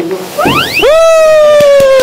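Cartoon-style comic sound effect: a quick upward swoop, then a long held whistle-like tone that slowly sinks in pitch. A couple of faint knocks come under it.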